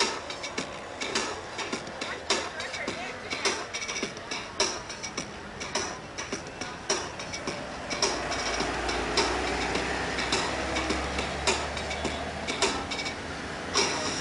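Street traffic with a sharp beat repeating about once a second, with lighter ticks between. A heavy vehicle rumbles past from about eight seconds in.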